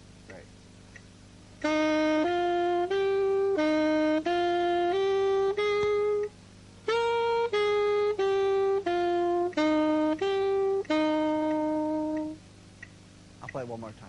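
Saxophone playing a simple beginner's exercise melody in even notes, one phrase at a time: do-re-mi, do-re-mi-fa, then sol-fa-mi-re-do-mi-do, with the last note held longer.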